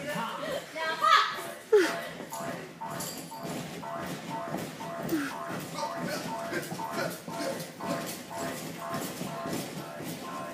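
Children's voices and shouts echoing in a large gym hall over quieter background music with a steady beat. There is a loud shout about a second in, followed by a sharp thump.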